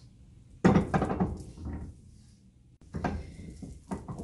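Silicone paddle stirring and knocking against a nonstick pot of thick, lumpy glue-and-cornstarch dough that is thickening over low heat. A sudden loud knocking scrape comes about half a second in and lasts about a second, and a second, shorter one comes about three seconds in.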